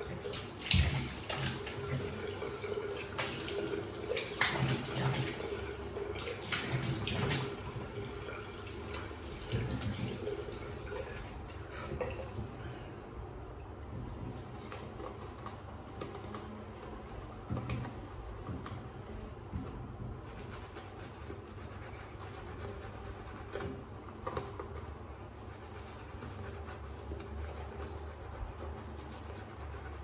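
Tap water running into a bathroom sink with splashing as a face is rinsed between shaving passes: busy, irregular splashes for roughly the first dozen seconds, then a steadier, quieter flow.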